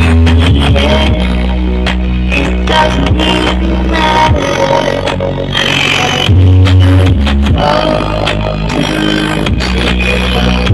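Electronic dance music played at high volume through a stacked subwoofer and speaker rig. Deep bass notes are held for several seconds each, the loudest coming right at the start and again just past the middle, under sharp percussion hits.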